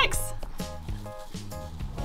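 Background music: a light tune of short repeated notes over a steady beat.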